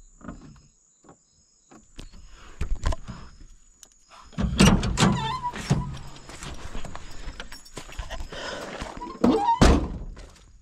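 A vehicle door being opened and the camera being handled as the camera operator gets out, with several thumps and knocks. A short squeak is heard a little past the midpoint and again near the end.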